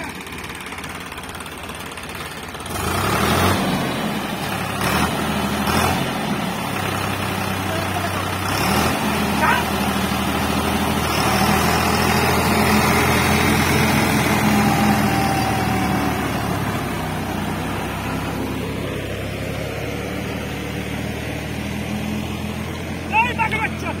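Eicher 5660 tractor's diesel engine revving hard under load as the tractor, bogged in mud with a rotavator on the back, tries to drive itself out. It climbs to high revs about three seconds in, holds there, and eases back down in the second half.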